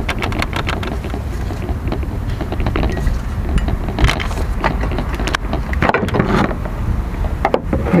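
Scattered short metallic clicks and knocks of hands working bolts and parts at the front of the engine, over a steady low rumble.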